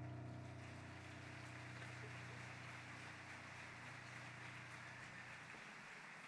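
The last sustained piano chord dies away as the sound fades out, its low notes cutting off near the end, under a faint, even hiss.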